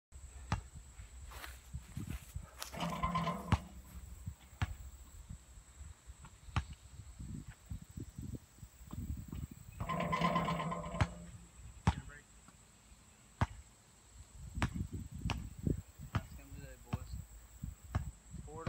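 Basketball bouncing on an outdoor paved court: a series of sharp, irregularly spaced thuds, with two brief shouts from the players about three and ten seconds in.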